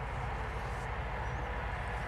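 Steady outdoor background noise: a low, even rumble with a faint short high chirp a little past halfway.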